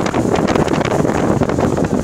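Loud, steady wind buffeting the microphone on the open deck of a moving passenger ferry, a dense rushing noise with quick ragged flutters.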